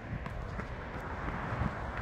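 Running footsteps on pavement, picked up by a handheld phone's microphone as the runner moves along.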